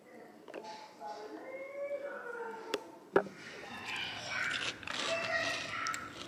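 Faint, indistinct speech with two sharp clicks about three seconds in, the second the loudest.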